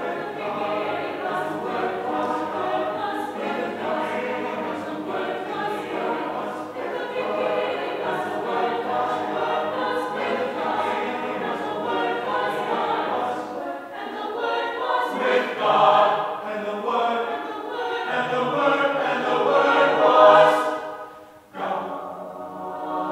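Mixed choir of men's and women's voices singing in sustained harmony. The sound swells louder twice in the second half, then breaks off briefly near the end before the voices come back in.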